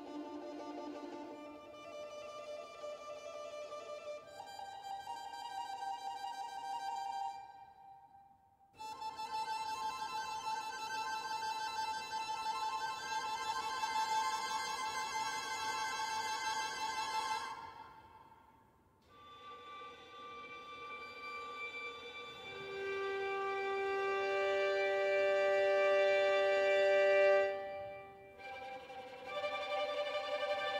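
Sampled solo first-chair violin playing trills on sustained notes, in phrases broken by short pauses. The last phrase swells louder and cuts off near the end.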